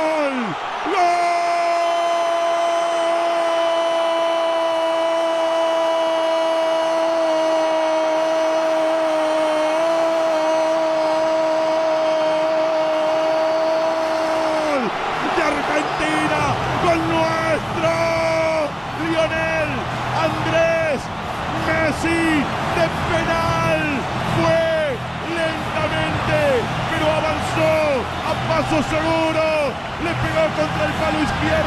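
Male Spanish-language radio football commentator's goal cry: one long held "gol" on a steady pitch for about fourteen seconds. Then comes a run of short shouts, about one a second, each falling in pitch, as a low background noise comes in.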